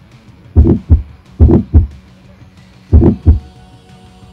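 A bear's heartbeat played back at an exhibit: four deep lub-dub double thumps, the first two close together, then about one every second and a half. This is the heart rate of a bear in summer, set against its very slow heartbeat in winter hibernation.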